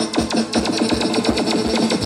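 Live Thai ramwong dance band playing an instrumental passage with a fast, steady beat and electronic-sounding melody lines, without singing.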